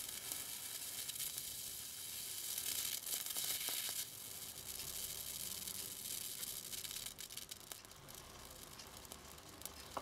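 High-voltage arc from a flyback transformer driven by a 24-volt ZVS driver, sizzling with a steady hiss and crackle as it burns into a galvanized wire and throws off sparks. It is loudest about three seconds in and thins to scattered crackles over the last few seconds.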